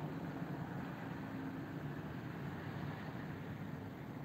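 Steady low rumble and hiss of distant city traffic, with a faint hum that fades out in the first half.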